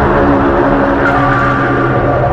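Electric guitar playing a loud, distorted drone of sustained tones. A higher held tone comes in about a second in.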